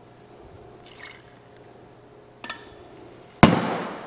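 A glass liqueur bottle and a metal jigger clinking and knocking on a glass tabletop while cherry liqueur is measured out for a cocktail. There is a faint clink about a second in, then a sharp knock, then a louder knock near the end that rings briefly.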